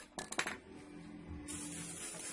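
Sharp metallic clinks as the steel air rifle barrel and tools are handled at a metal bench vise, followed about midway by a steady rubbing hiss as a cloth is worked along the barrel.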